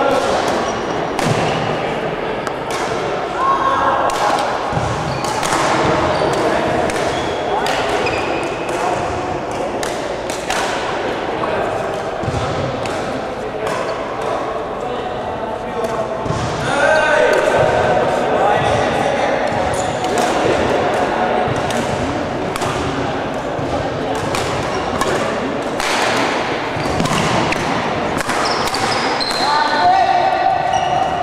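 Badminton rally in a sports hall: repeated sharp hits of rackets on the shuttlecock, irregularly spaced, echoing in the large hall over continuous background chatter of players and onlookers.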